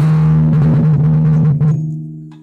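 Timpani played loudly with felt mallets: a sustained roll on one low drum, then a stroke on a higher-pitched drum near the end that rings on and fades.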